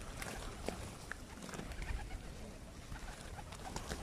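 A flock of feral pigeons being hand-fed: cooing and wing flaps, with scattered short clicks and flutters.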